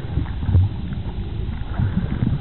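Underwater sound picked up by a camera below the surface: an uneven low rumble of moving water, with a few faint clicks.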